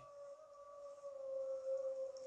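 A steady mid-pitched tone, growing slightly louder through the pause.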